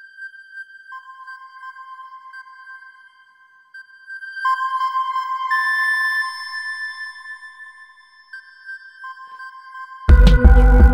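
Korg Gadget's Kingston chiptune synth, soloed, playing long held high notes, two pitches sounding together, swelling louder in the middle and easing off near the end.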